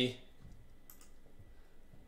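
A few faint clicks on a computer, the sharpest about a second in, as the live-stream view is switched over. The end of a spoken word is heard at the very start.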